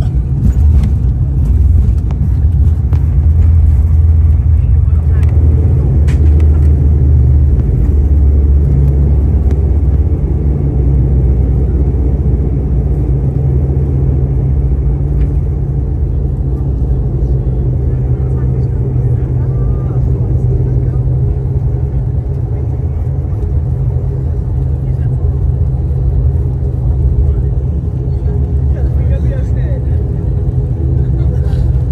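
Cabin noise of an ATR 72 turboprop on its landing rollout: a steady, loud, low drone from the engines and propellers. It is loudest over the first ten seconds while the aircraft decelerates on the runway, then eases a little as it slows.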